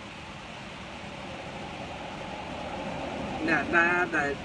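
Steady background rush of road traffic that slowly grows louder, as of a vehicle approaching; a man starts speaking near the end.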